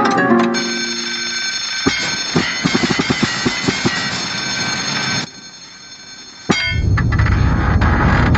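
Cartoon soundtrack of music and sound effects: sustained pitched tones with a quick run of clicks, a sudden drop in level about five seconds in, then a sharp hit followed by a low rumbling noise.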